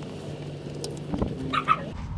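Spark plug wire boot being worked back onto its plug deep in a V6 engine bay, heard as scattered faint clicks and handling noises. A short pitched sound comes near the end.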